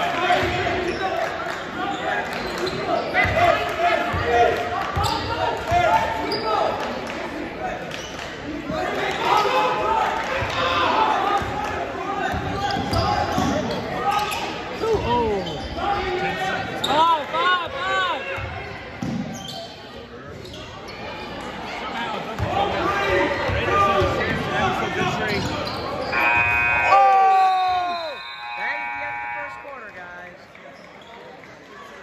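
Basketball game in an echoing gym: the ball dribbling and sneakers squeaking on the hardwood court under crowd chatter. Near the end, the scoreboard buzzer sounds for about three seconds, ending the quarter.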